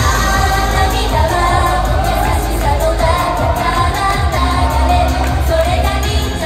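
Live J-pop idol song played through outdoor PA speakers: a backing track with a steady beat and a group of young women singing.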